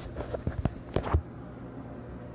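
Damp clothes being handled inside a clothes dryer's drum: a few soft rustles and knocks in the first second, ending in a low thump, then only a steady low hum.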